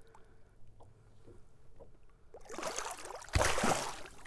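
Water splashing as a musky thrashes in a landing net beside the boat: a few faint drips and ticks, then splashing builds about two and a half seconds in, with a loud splash near the end.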